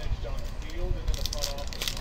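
Foil trading-card pack crinkling and crackling in the hands as it is worked open, the crackle getting denser from about a second in.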